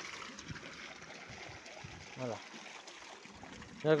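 Water running steadily into a livestock water trough as it fills.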